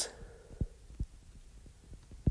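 A few faint, soft low taps of a stylus writing on a tablet's glass screen, spaced irregularly around the middle.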